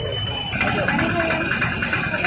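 Indistinct voices over idling vehicle engines. About half a second in, the sound gets louder and a close engine's rapid, even pulsing comes in.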